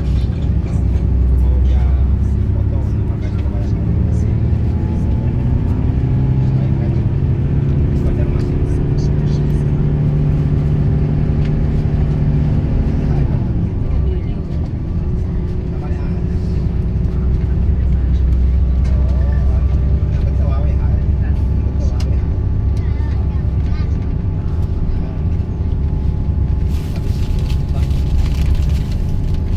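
Engine and road noise of a moving vehicle. The engine note climbs steadily for about ten seconds, drops suddenly about halfway through, then runs steady.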